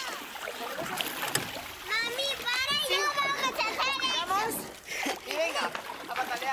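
Children shouting and squealing over water splashing in a swimming pool. The loudest high-pitched calls come from about two to four and a half seconds in.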